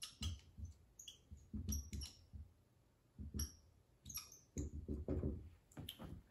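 Dry-erase marker squeaking and tapping on a whiteboard as a line of handwriting is written: a string of short strokes with a brief pause near the middle.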